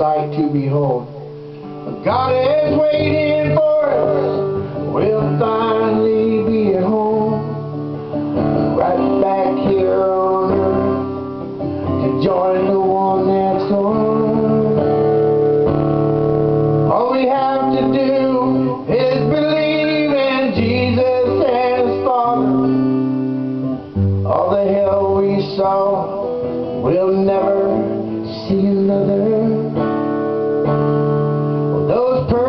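A song played live on a strummed acoustic guitar, with a man's voice singing over it in phrases with short pauses between them.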